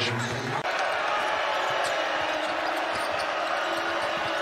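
Game sound in a basketball arena: steady crowd noise with a basketball being dribbled on the hardwood court. There is a brief drop in level about half a second in.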